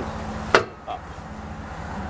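Single sharp metal clank about half a second in as a weight-distribution hitch's spring-bar chain is levered up with the lift bar and snapped into its frame bracket, over a steady low hum.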